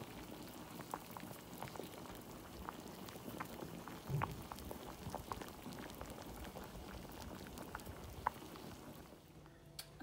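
Potatoes boiling in a pot of water: a faint, steady bubbling with many small pops, quieter in the last second.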